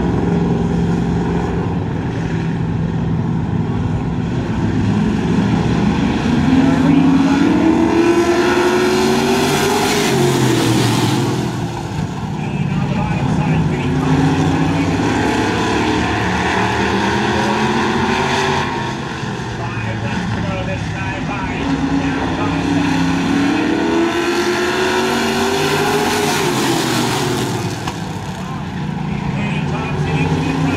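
Several street stock race cars running in a close pack on a short oval, their engines climbing in pitch under acceleration and then dropping as they lift for the turns, about three times.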